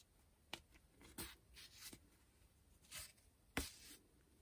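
Faint handling sounds of acrylic yarn and knitted fabric as a knot is tied with a needle: a few short, scratchy rustles, the strongest near the end.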